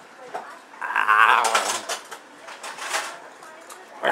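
A man's wordless vocal noise with a wavering pitch, starting about a second in and lasting about a second, followed by quieter breathy mouth sounds.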